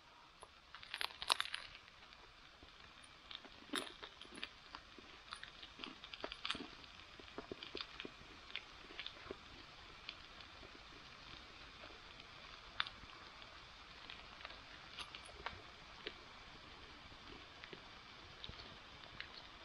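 A person biting into and chewing a crusty bread roll with a meatball patty, heard close up: a cluster of crunchy clicks about a second in, then scattered small clicks and smacks of chewing.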